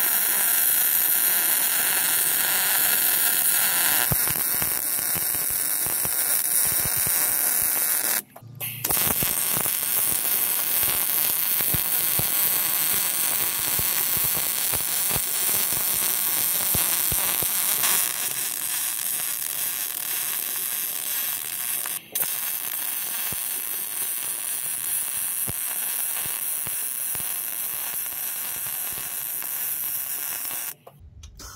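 MIG welding arc on a steel truck frame rail, sizzling steadily as the wire feeds. The arc breaks off briefly twice, about eight seconds in and about twenty-two seconds in, then strikes again.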